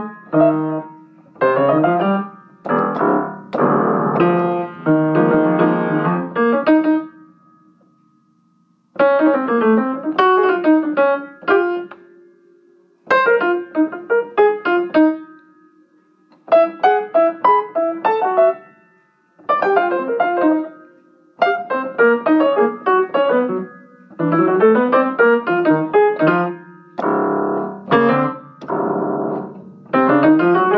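Upright piano played solo in jazz style: phrases of quick running notes separated by short pauses, with one near-silent break about eight seconds in and rising runs near the end.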